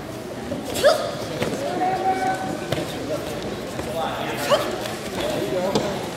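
Voices of coaches and spectators calling out in short bursts, with a few short thumps, echoing in a large gymnasium. The loudest calls come about a second in and again about four and a half seconds in.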